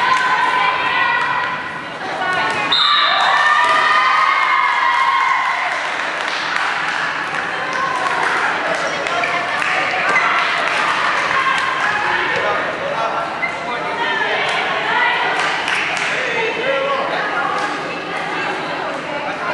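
Players shouting and calling out during a dodgeball game, with dodgeballs thudding and bouncing on a wooden sports-hall floor now and then, all echoing in a large hall.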